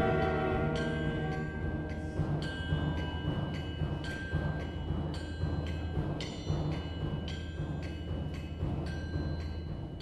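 Chamber ensemble music: a struck percussion instrument playing ringing notes about twice a second, irregularly spaced, over a low held drone, the whole slowly fading toward the end.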